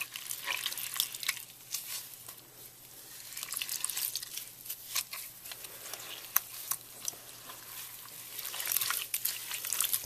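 Soaked green floral foam crushed and squeezed by hand into a wet mush: a dense run of small wet crackles and pops that comes in waves as the hands grip and knead.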